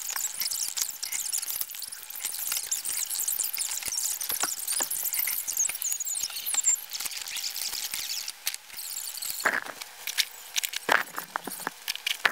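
Clothes hangers sliding and scraping along a closet rod amid rustling clothes, a dense high-pitched scratchy squealing. It eases off after about nine seconds, and a few sharper knocks follow near the end.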